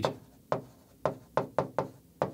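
Pen tip tapping against the glass of a large touchscreen whiteboard while writing: about five short, sharp taps, most of them close together in the second half.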